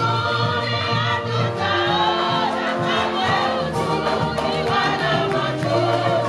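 Choir singing an upbeat gospel song, with instrumental accompaniment and a steady beat.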